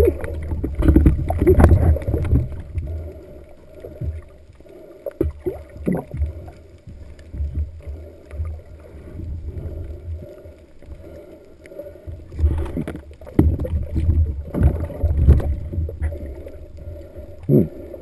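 Muffled underwater noise picked up through a waterproof action-camera housing: low, uneven rushing and knocking of water, swelling at the start and again about two-thirds of the way through.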